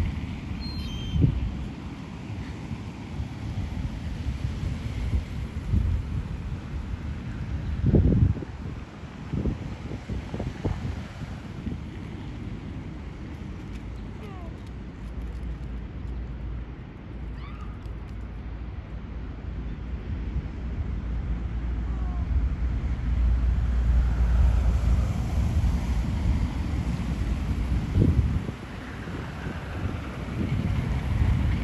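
Wind buffeting the microphone outdoors: a steady low rumble with a few louder gusts, one about a second in, one around eight seconds and one near the end.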